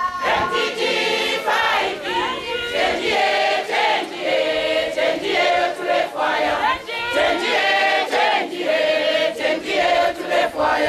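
A large group of women and men singing together in chorus, a cappella, in short repeated phrases.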